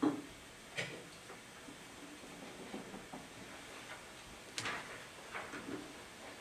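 Quiet meeting-room hush broken by a few brief rustling and knocking handling noises. The loudest comes about four and a half seconds in, with smaller ones near the start and near the end.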